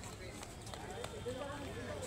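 Voices of several people chatting at a distance, overlapping, with a few footstep clicks on brick paving.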